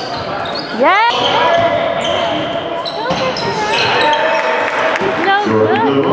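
Basketball game in a gym: the ball bouncing on the hardwood court among voices of spectators and players echoing in the hall, with a short, sharply rising squeal about a second in and another near the end.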